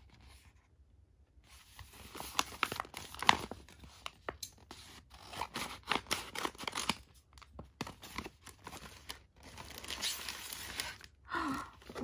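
Paper and crinkly plastic packaging being handled and torn open by hand, an irregular run of crackles and rips that starts about a second and a half in.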